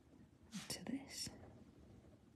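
A woman's voice, whispered or muttered under her breath: a few hissy syllables lasting under a second, starting about half a second in.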